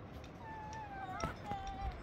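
A high-pitched, drawn-out call that slides down in pitch, followed by a shorter, steadier one, with a couple of sharp clicks between them.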